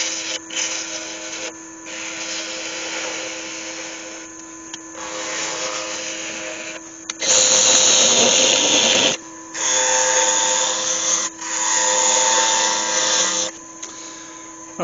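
Wood lathe turning a small piece of yew while a turning tool cuts it: a steady motor hum under the hiss of the cutting. Three louder cutting passes come in the second half, separated by brief pauses.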